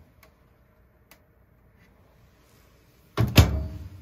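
A High Pointe microwave oven's door closing, one loud thunk about three seconds in that dies away quickly, after a couple of faint clicks.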